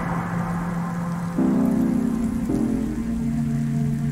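Rain sound effect, a steady hiss of falling rain, over slow sustained music chords that change every second or so.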